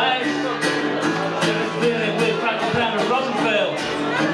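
Amplified guitar strummed in a steady rhythm as part of a live solo rock song, with a man's voice over it.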